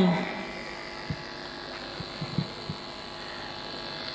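Steady electrical hum and hiss from a public-address system with nothing playing through it, with a few faint low thumps in the middle.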